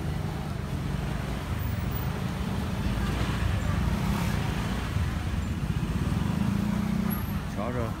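Busy open-air market ambience: a steady low rumble of traffic and bustle with voices in the background. A voice rises and falls in pitch near the end.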